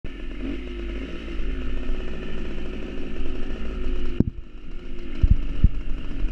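A small motorcycle's engine running steadily while riding, with low rumble from wind on the microphone. A sharp click comes about four seconds in, after which the engine sound drops, and two dull thumps follow near the end.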